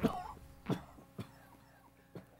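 A man coughing: one loud cough at the start, then two short, fainter coughs within the next second or so.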